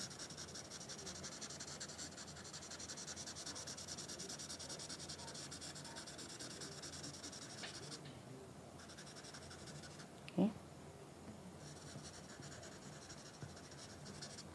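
Red felt-tip marker scribbling rapidly back and forth on paper, shading in a large area, with a brief pause about eight seconds in.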